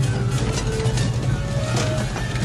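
Film soundtrack: held music notes over a steady low rumble.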